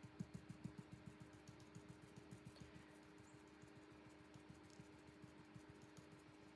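Faint, rapid soft tapping of a stencil brush pouncing acrylic paint through a plastic stencil, several dabs a second, growing weaker after the first couple of seconds. A low steady hum runs underneath.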